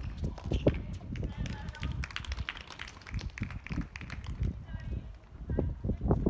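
Tennis point on an outdoor hard court: a run of sharp ball strikes and bounces with quick running footsteps on the court surface.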